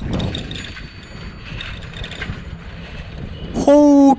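Bicycle rolling along a dirt lane: a low rumble of tyres and wind on the microphone, with a light mechanical rattle and ticking from the bike. A man's voice cuts in near the end.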